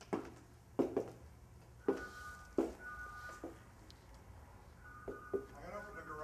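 A faint electronic beep of two steady tones held together, sounding in three short pulses about two, three and five seconds in, with a few brief murmured words.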